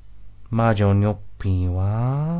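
A low male voice, drawn out in long held tones: a quiet first half-second, then a short steady phrase, then a second phrase about one and a half seconds in that rises in pitch.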